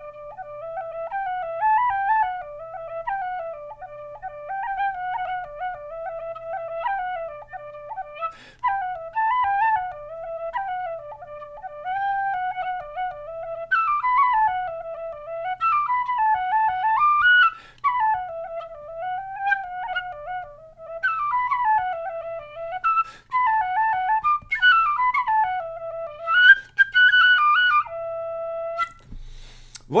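Generation Shush tin whistle, a low-volume practice whistle, playing a tune mostly in its low register, with quick runs up and down and a held final note near the end. Its tone is somewhat muffled, as if something were partly blocking the breath.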